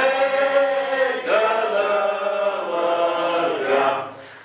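Voices singing a slow hymn in long held notes, the tune moving to a new note every second or two.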